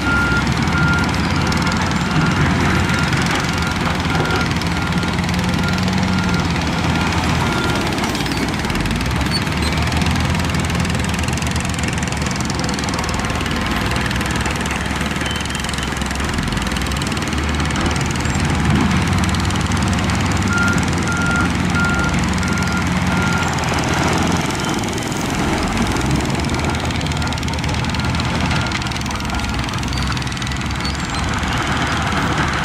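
Heavy diesel earthmoving machines running steadily under load, with a reversing alarm beeping in an even series for the first several seconds, again about two-thirds of the way in, and faintly near the end.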